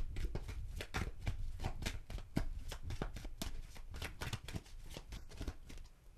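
A deck of tarot cards shuffled by hand: a quick, irregular run of card slaps and riffles that grows fainter near the end.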